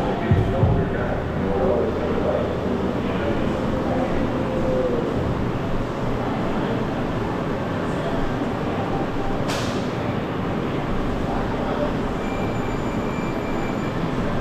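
Steady room noise of a large training hall, with indistinct voices and a short sharp hiss about nine and a half seconds in.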